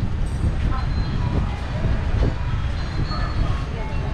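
Outdoor street-market ambience: a steady low rumble with faint voices of people in the background.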